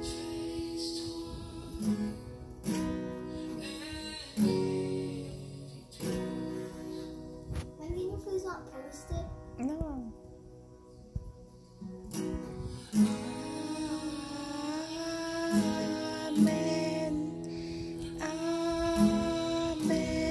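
Acoustic guitar strummed slowly, a chord struck every couple of seconds and left to ring, with a quieter stretch about halfway through.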